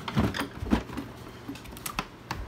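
A few light knocks and clicks of handling, spaced irregularly over faint room noise.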